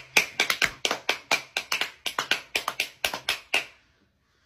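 A quick run of sharp taps, about five or six a second, that stops suddenly near the end.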